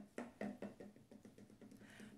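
Faint run of short, irregular soft taps and rustles from hands pulling crochet yarn and handling the work and hook.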